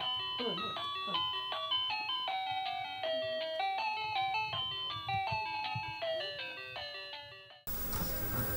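A baby walker's electronic toy tune: a quick melody of bell-like notes playing steadily, cutting off suddenly near the end. A few short vocal sounds come in the first second.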